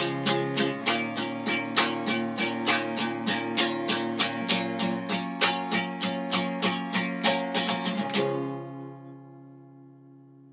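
Acoustic guitar with a capo, strummed in a steady rhythm as the closing bars of a folk song, ending on a last chord about eight seconds in that rings on and fades away.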